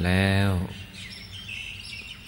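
A man's voice holds one drawn-out word for the first half-second. Then, through the pause, birds chirp faintly in the background.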